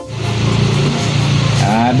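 Background music with a steady low bass, over the dry rustle of hands stirring burnt rice husk and cocopeat in a plastic basin; a voice comes in near the end.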